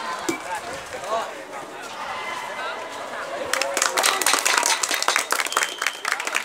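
Spectators chattering around a school volleyball match, then, about three and a half seconds in, breaking into quick, dense hand clapping with voices as a point is won.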